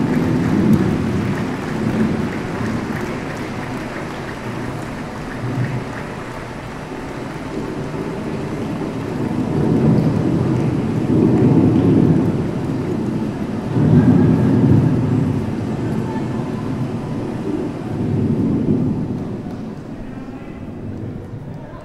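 Audience applause and crowd noise, a dense roar that swells louder several times.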